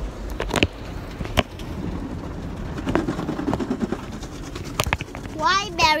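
Heavy rain drumming on a car's roof and windows, heard from inside the cabin as a steady patter, with a few sharp taps scattered through it.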